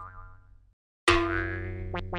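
Cartoon 'boing' comedy sound effect: a sudden springy twang about a second in that rings on and fades away, with a low hum beneath it. The tail of an earlier effect dies out at the start.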